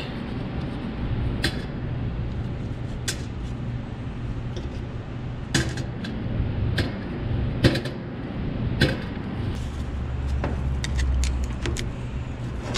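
Oily metal parts of a power steering control valve being handled and set down on a concrete floor: scattered sharp clicks and clinks at irregular spacing, over a steady low hum.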